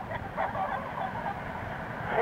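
Tour bus running, a steady low engine and road rumble heard from inside the cabin on a cassette recorder, with faint voices during the first second or so.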